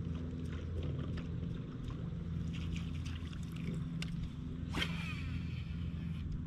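Steady low hum of a bass boat's bow-mounted electric trolling motor running, with scattered small clicks and a brief high-pitched falling sound about five seconds in.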